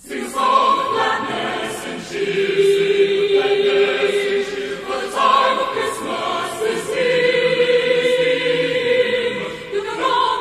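A choir singing a Christmas song in long held notes, several voices at once, starting suddenly at the opening of a new track.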